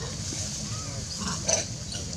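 Macaque giving a short call about one and a half seconds in, over a steady low rumble.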